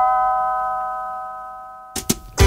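The closing chord of a Romanian pop song: several bell-like keyboard notes held together, ringing and fading away steadily. A sharp onset comes right at the very end as the next song starts.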